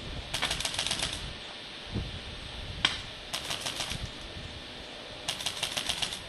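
Paintball markers firing in three rapid bursts of well under a second each, with a single shot between the first two bursts.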